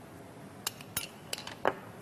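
A few light clinks of a utensil against dishware, about four short ticks in the second half.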